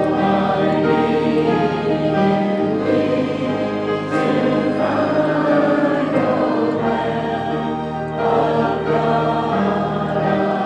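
A congregation singing a slow hymn together, accompanied by an organ with long held chords. The organ's bass notes change about two and a half seconds in and again near seven seconds.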